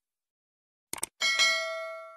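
Subscribe-button sound effect: two quick mouse clicks about a second in, then a single bell ding that rings on and fades away.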